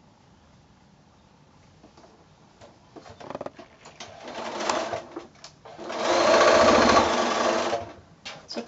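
Electric sewing machine stitching a seam through pieced cotton patchwork squares. After a few quiet seconds with a few light clicks, it sews a short burst about four seconds in, then a longer, louder steady run that stops just before the end.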